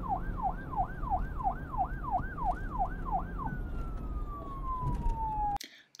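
Siren yelping, its pitch rising and falling about three times a second over a low rumble, then switching about halfway to a single tone that slides steadily down for about two seconds before cutting off abruptly near the end.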